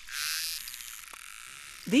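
Narwhal sounds recorded underwater: a loud rapid buzz of clicks in the first half-second, then a short click train and a single click.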